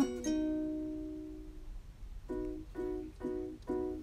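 Light background music on a plucked string instrument: one chord held for over a second, then a run of about five short chords in an even beat.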